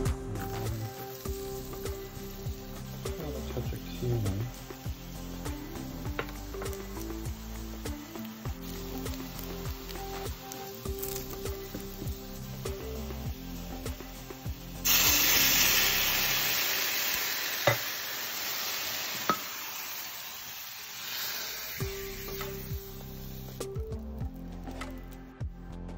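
Background music with a faint sizzle of sliced garlic frying in oil in a small stainless steel pan. About fifteen seconds in comes a sudden loud hissing sizzle as water hits the hot pan to deglaze it, dying away over several seconds.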